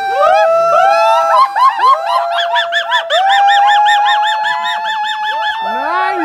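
Several loud, high-pitched hoots sounding over one another, some held steady and some swooping, with a fast warbling run in the middle.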